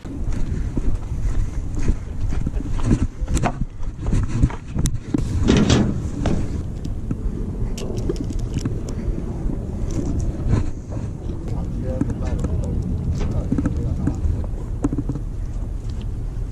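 Steady low wind rumble on the microphone, with scattered clicks and knocks from a spinning rod and reel being handled.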